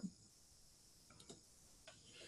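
Near silence: room tone with a few faint clicks about a second in and another near the end.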